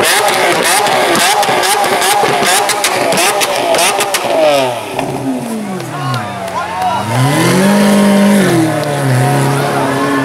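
Sports car engine revving. From about halfway its pitch falls smoothly, climbs back up and holds, then drops a step and holds again. The first half is busier, with voices and clicking noises over the engine.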